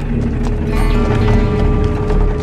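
Background music of sustained notes, with a higher layer of notes coming in just under a second in, over scattered light knocks.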